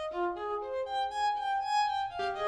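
Sampled first-desk solo violin from the Spitfire Solo Strings library, playing a soft short-note ostinato in the brushed consort articulation: a running line of short, softly attacked notes, about four a second. It is panned to the left.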